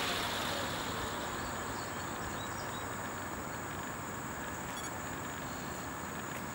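Velos UAV helicopter's main rotor spinning down to a stop under its rotor brake, its whoosh fading over the first second or two into a faint steady hiss with a thin high whine.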